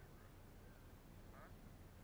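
Near silence: faint outdoor background with a couple of faint, short distant calls.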